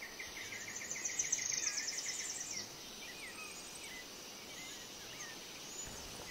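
Faint birdsong over a steady outdoor hiss: a quick run of short repeated chirps with a higher trill above them for the first two and a half seconds, then a few scattered single calls.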